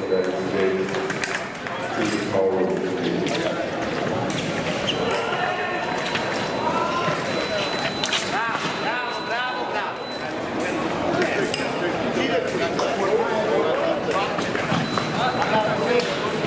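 Foil fencing bout in a large hall: a steady murmur of voices with scattered sharp clicks from blades and footwork. Midway, a thin, high, steady electronic beep sounds for a few seconds: the scoring machine registering a touch.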